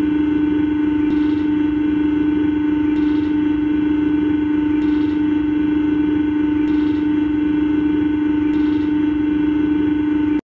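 Airbus A320 cockpit warning tone, given as its bank angle alarm: one loud, steady electronic tone held without a break, with a faint high hiss pulsing about every two seconds.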